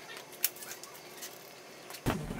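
Quiet room tone with a few faint, short clicks, the loudest about half a second in.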